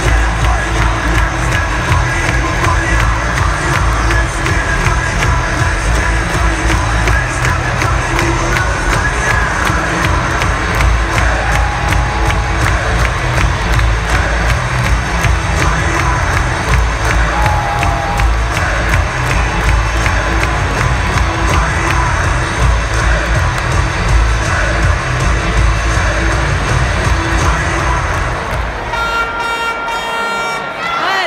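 Loud arena music with a steady beat playing over the public-address system, mixed with a large hockey crowd cheering and shouting. Near the end the music drops back and a held pitched note comes in.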